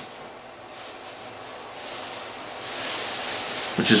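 Cut strips of plastic shopping bags rustling as a bundle of them is grabbed and lifted, the rustle growing louder over the first couple of seconds.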